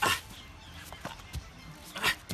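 A man's single short shout of encouragement, then faint background with a couple of soft taps.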